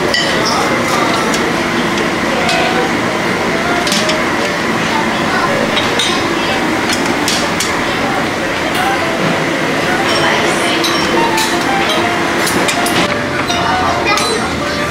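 Dining-room hubbub: indistinct chatter of diners, with frequent light clinks of plates, serving spoons and cutlery scattered throughout.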